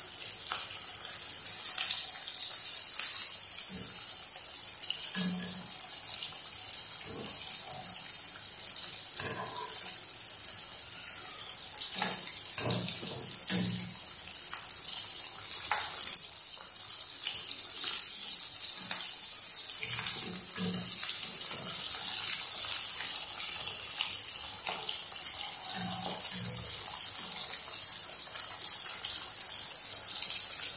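Bondas deep-frying in hot oil: a steady high sizzle, with occasional clicks as a wire skimmer turns them against the pan.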